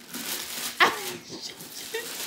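Christmas wrapping paper being torn and crinkled off a gift box, with a short high-pitched squeal about a second in.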